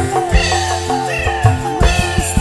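Live dangdut band music: low drum strokes and bass under a high melody line that slides downward in pitch over and over.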